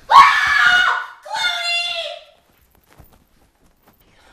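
A person screaming, high-pitched and loud, in two cries about a second each, the second starting a moment after the first ends.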